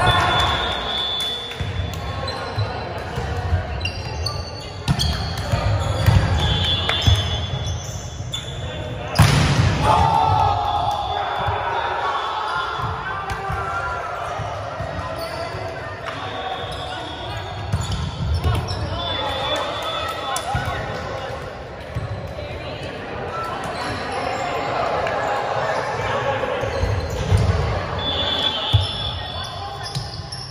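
Volleyball rally in a gymnasium: the ball is struck and hits the hardwood floor, with the sharpest hit about nine seconds in. Sneakers squeak briefly on the court several times, and players' voices carry in the echoing hall.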